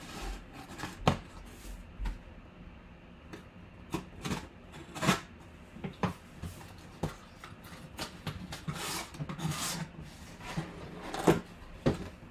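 Folding knife slicing the packing tape on a cardboard box, then cardboard scraping and rubbing as the box is opened and the boxed mini helmet is slid out. Irregular scrapes with scattered clicks and knocks, the sharpest near the end.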